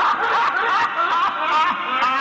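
A man's mocking, theatrical laugh, delivered as a villain's taunt, the pitch bobbing up and down with each 'ha'.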